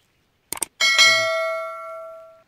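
Subscribe-button sound effect: a quick double click about half a second in, then a single bright bell ding that rings on and slowly fades.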